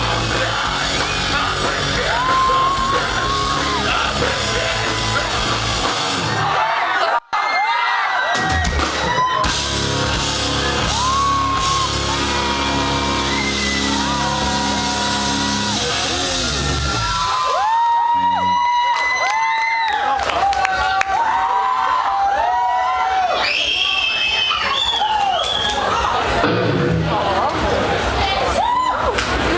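Live rock band playing loud, with heavy bass and drums, until about two-thirds through, when the music stops. After that, a crowd is cheering, yelling and whooping.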